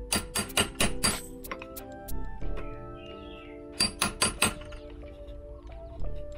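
Hammer taps on a rounded setting punch, peening a rivet flat through a Kydex sheath: a quick run of about five sharp strikes at the start and four more about four seconds in, over background music.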